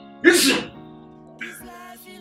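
A person's short, loud, breathy vocal burst about a quarter second in, like a sneeze, over background music with steady held notes.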